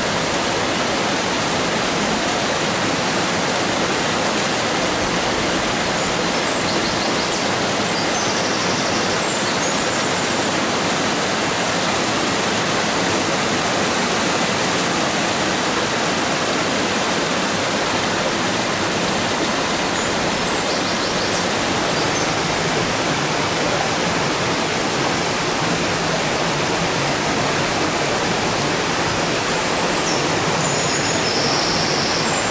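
Mountain stream of the Alento springs rushing steadily over rocks: a loud, unbroken rush of water.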